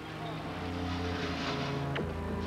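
A large truck's diesel engine running steadily close by, a low even drone.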